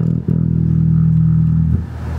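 Electric bass guitar played through an amplifier: a couple of quick plucked low notes, then a long sustained low note, with a new note struck just before the end.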